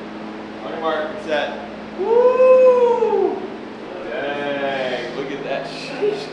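A long vocal call about two seconds in, rising and then falling in pitch over just over a second, the loudest sound here, set between short bits of voice with no clear words.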